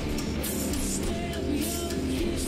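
Live rock music: electric guitar and drums with regular cymbal hits, and a woman's voice singing over them in the second half.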